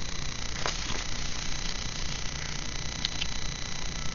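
Steady low hum with a few faint clicks and rustles of sticker-book sheets being handled, about two-thirds of a second in and again about three seconds in.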